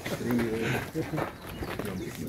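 Background voices: people talking quietly in the crowd, with no clear words.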